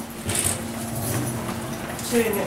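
Wheelchair rolling across the door sill into an elevator car: a short scrape about a third of a second in, then a low rolling rumble, over a steady low hum.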